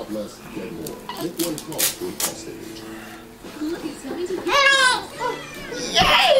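A baby's high-pitched squeal about four and a half seconds in, wavering for about half a second, followed by a shorter, fainter one; low voices murmur in the background.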